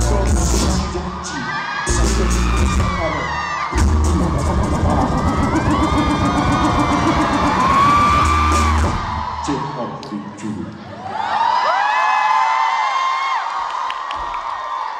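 Live hip-hop song over a concert PA, heavy bass with a sung vocal line, ending about nine to ten seconds in; the crowd then screams and cheers.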